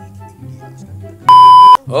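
A single loud electronic beep, one steady high tone about half a second long starting a little past the middle, over quiet background music.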